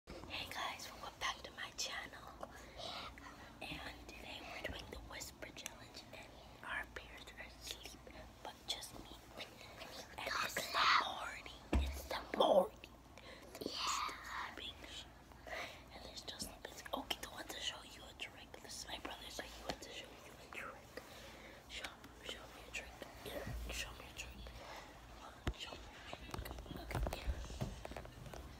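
Children whispering, with a louder burst of voice about halfway through.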